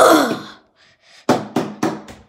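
A child's wordless vocal sound trails off, then small plastic toy figures knock three times on a countertop, sharp taps about a quarter-second apart.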